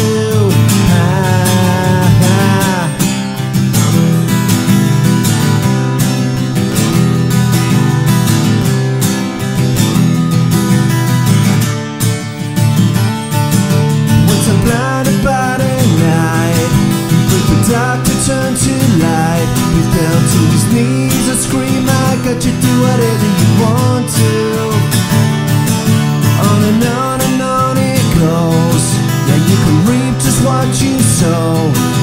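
Live acoustic music: two acoustic guitars playing together, with a man singing into the microphone over them.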